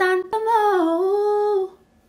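A woman singing a cappella: a short note, then one long held note that dips in pitch and comes back up, stopping about three quarters of the way through.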